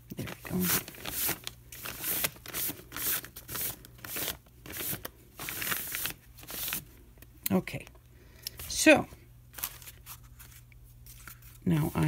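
A damp paper towel rubbing sanding dust off a craft surface in quick strokes, about two a second, which stop about seven seconds in.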